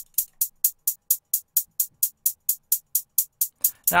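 A programmed drum-machine hi-hat loop of short, crisp ticks at an even pace of about four and a half a second, with no other instruments. It is run through an auto-panner plugin (MAutopan) that swings the hats left and right.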